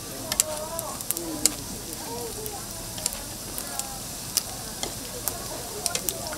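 Fish cake pancakes shallow-frying in oil on a flat griddle pan, sizzling steadily with scattered sharp pops and crackles.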